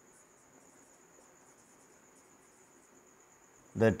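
Faint marker strokes on a whiteboard under a steady, high-pitched background tone; a man speaks a word near the end.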